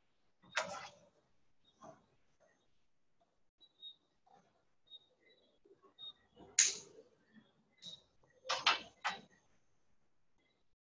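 Scattered brief rustles and knocks from someone moving at a desk close to the microphone. The loudest comes about six and a half seconds in, with a quick cluster of three near the end.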